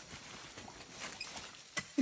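Faint rustling and crackling of dead leaf litter under rubber boots shuffling in place, with a sharp click near the end.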